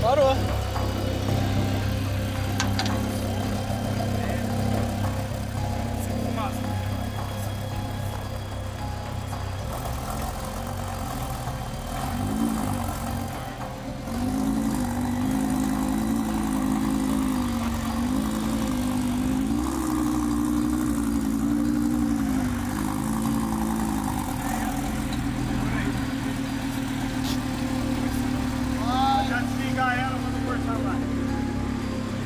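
A Lamborghini Gallardo's V10 engine running with exhaust smoke, first idling steadily, then from about twelve seconds in revved gently up and down several times as the car creeps up a tow-truck ramp. The engine has been knocking and smoking after shutting down on the road, and those present suspect a damaged piston.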